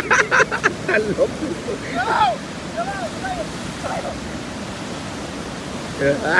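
Steady wash of small ocean waves breaking on a sandy beach. There are short voice sounds near the start and a few brief distant calls a couple of seconds in.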